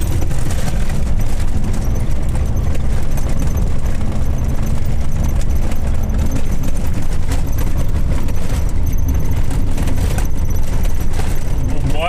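Truck engine and road noise heard from inside the cab on an unpaved dirt road: a loud, steady low rumble with frequent rattles and knocks from the cab over the rough surface.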